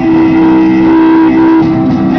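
Live Andean folk band playing: acoustic guitars and a charango strummed together, with one long held note sounding over them through most of the passage.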